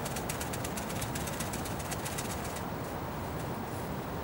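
Rapid fine ticking and rustling of 1 mm micro pellets scooped by hand from a plastic bag and dropped into a PVA bag, easing off about two and a half seconds in.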